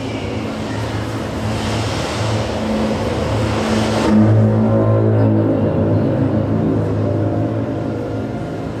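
Backing music for a pole-dance routine: low sustained drone tones, with a hissing swell that builds and then cuts off suddenly about four seconds in.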